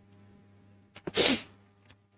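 A single short, sharp burst of breath from a man about a second in, lasting under half a second.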